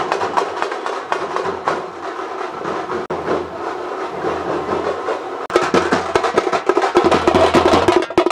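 Thappu (parai) frame drums beaten by a troupe with sticks in a fast, dense rhythm of sharp strikes, louder from about five and a half seconds in.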